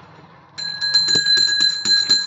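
Brass hand-held puja bell rung rapidly and continuously during the lamp worship. It starts about half a second in with a bright, steady ring.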